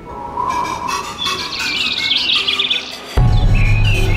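Birds chirping in quick, repeated high trills; about three seconds in, a loud music bed with a low steady drone starts suddenly under them.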